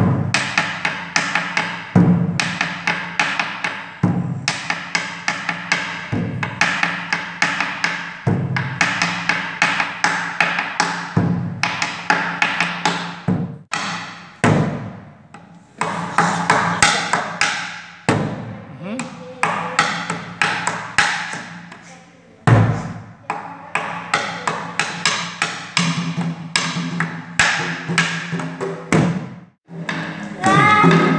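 Colombian tambora played with two wooden sticks: rapid clicking of the sticks on the drum's wooden shell, with a deep strike on the skin head every second or two, as in a basic cumbia tambora pattern. The playing halts briefly a few times and starts again.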